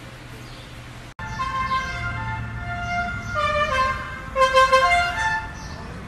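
A musical vehicle horn playing a tune of short stepped notes, starting about a second in and stopping near the end, over a steady low street hum.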